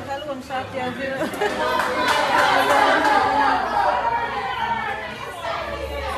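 Several people talking over one another at once, with no one voice clear, louder for a second or two in the middle.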